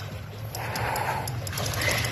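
A hooked sturgeon thrashing at the surface of shallow river water, splashing in two spells: one from about half a second in and another near the end. A low steady hum runs underneath.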